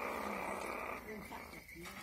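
Civets in a wire cage growling over a dead rat they are fighting for, a rough rasping sound that fades out about a second in.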